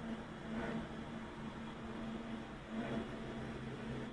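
Focus 6090 UV flatbed printer running just after power-on, a steady hum and whir as its print-head carriage travels on its own toward the front limit sensor during the start-up homing routine.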